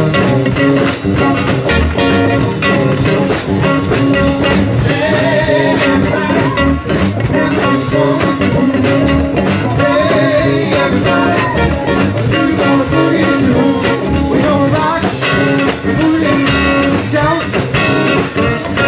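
Live blues-rock band playing a boogie: electric guitars, bass and drums with a washboard scraped in the rhythm, and a lead vocal.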